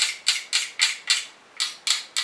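A knife blade drawn quickly through a handheld knife sharpener: about seven short scraping strokes, about four a second, with a brief pause past the middle.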